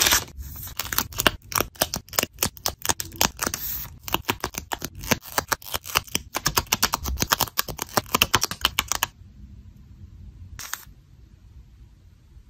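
Close-up handling of craft materials: a rapid run of sharp clicks and crackles as a clear plastic sleeve and a sticker sheet are handled and picked at with metal tweezers. It stops about nine seconds in, with one more click shortly after.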